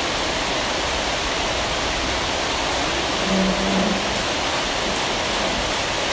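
A steady, even rushing hiss throughout, with a brief low hum a little past the middle.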